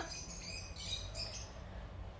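Quiet outdoor background: a few faint bird chirps over a low, steady rumble.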